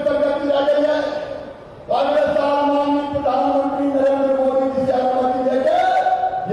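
A man's raised voice over microphones, chanting long drawn-out calls, as in leading a slogan: one held call, a short break about a second and a half in, then a longer call that steps up in pitch near the end.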